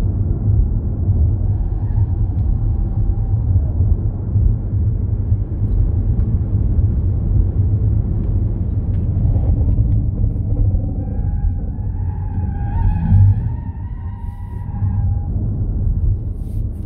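Steady low rumble of road and wind noise inside a Ford Mustang Mach-E GT electric car at racing speed, with no engine note. From about ten seconds in, a wavering high whine of several tones joins for a few seconds, then fades.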